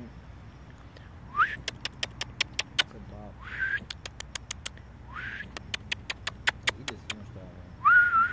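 A person whistling short rising notes three times. Each note is followed by a quick run of sharp tongue clicks, about five a second.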